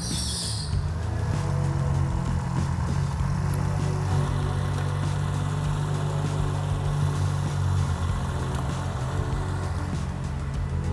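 Turbocharged Ford Barra inline-six idling steadily while its cooling system is bled of air through a coolant funnel, with a short hiss right at the start.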